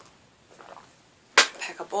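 Mostly quiet, then one sharp knock about one and a half seconds in as a ceramic coffee mug is set down on a table.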